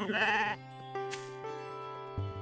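A sheep's short, wavering bleat at the very start, over soft background music with held notes.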